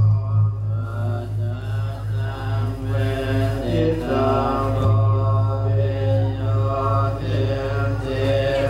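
Theravada Buddhist monks chanting together in a low, droning recitation that runs on without a pause.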